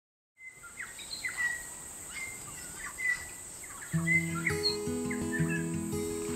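Birds chirping and whistling in short repeated calls over a steady high-pitched whine. Music with sustained low notes comes in about four seconds in.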